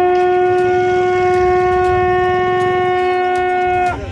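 A long looped brass horn blown in one long, loud, steady note that dips slightly in pitch and breaks off just before the end.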